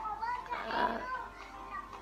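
Speech only: a woman's brief hesitant 'à', with faint voices chattering in the background.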